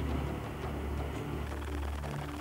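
Low, steady machinery drone from heavy construction equipment, with no sharp events.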